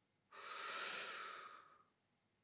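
One long, forceful breath from a man, starting suddenly and fading out over about a second and a half.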